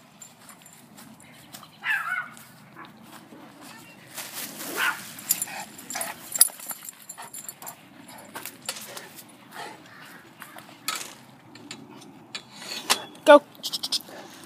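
A dog barking now and then, among scattered short knocks and rustles.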